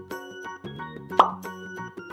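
Background music with a steady run of keyboard-like notes, and a single loud pop sound effect just over a second in.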